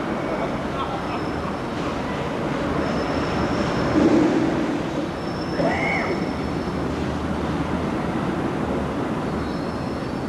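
A train's steady running noise, with a few faint voices over it.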